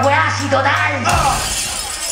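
Live hip hop beat played loud over a club PA, with a deep bass line under voices. The beat cuts off about a second in, leaving crowd noise and voices.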